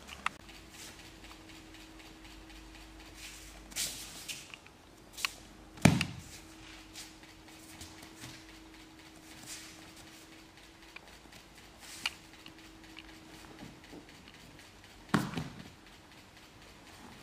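Thuds of a person thrown down onto padded dojo mats in aikido falls: two loud thumps, about six seconds in and near the end, with lighter slaps and shuffling of feet on the mats between. A faint steady hum runs beneath most of it.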